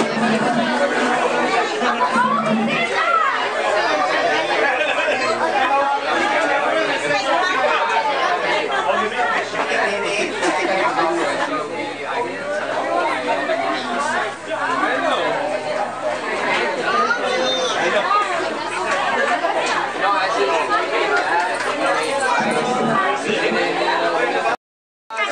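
Many people chatting at once: steady overlapping voices of a gathered group, with no single voice standing out.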